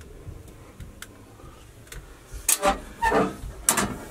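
A few light clicks, then a run of louder rubbing and knocking in the second half as hands move the hinged metal cover of a breaker panel and its wooden cabinet door.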